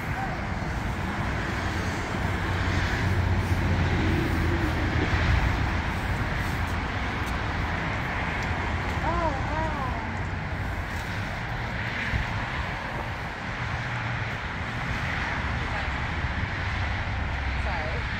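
Steady outdoor rumble and hiss of road traffic with wind on the microphone, swelling a little a few seconds in.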